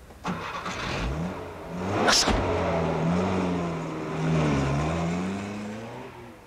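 A car engine starting and revving as the car pulls away, its pitch rising and falling, then fading toward the end. There is a brief sharp noise about two seconds in.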